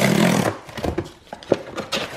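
A cardboard box torn open along its easy-open strip: a loud rip lasting about half a second, followed by a few light knocks and rustles of the cardboard being handled.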